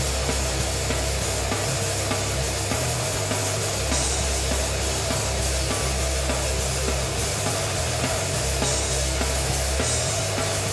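Crustgrind / thrash punk band recording: heavily distorted guitars and bass over a drum kit, played continuously.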